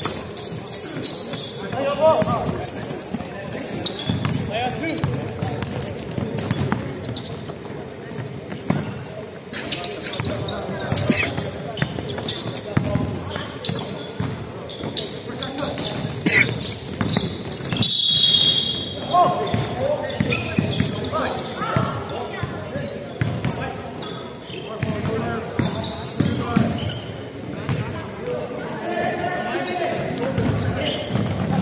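Basketball game in a gym: the ball bouncing on a hardwood court under players' shouts and calls, all echoing in the large hall.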